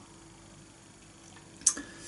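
Quiet room tone, broken once about one and a half seconds in by a single sharp click: a lip smack while tasting beer.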